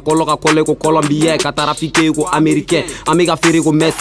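Hip hop track: a man rapping over a beat with sharp drum hits and a steady bass line.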